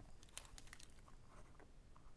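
Near silence with a few faint scratches and light ticks of a pen writing on paper.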